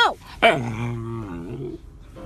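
Rottweiler puppy growling: a low, drawn-out growl of about a second, starting about half a second in with a quick slide down in pitch.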